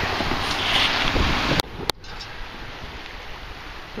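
Wind buffeting the microphone over surf washing on a beach, then a sudden cut about a second and a half in to a quieter, steady wash of wind and water.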